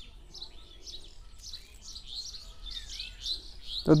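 Small birds chirping, a run of short high calls one after another.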